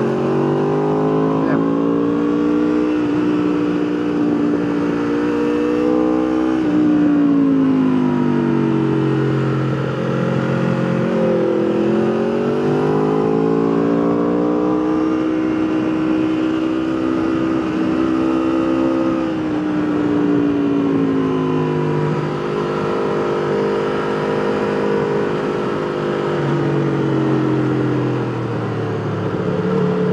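Sport bike engine at track speed, heard from on board, its pitch climbing under throttle and falling several times as the rider rolls off and brakes for corners, over a steady rush of wind noise.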